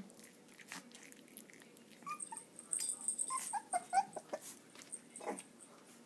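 Young Jack Russell terrier puppies giving a run of short, high squeaks and whimpers, bunched between about two and four and a half seconds in, with light clicks around them.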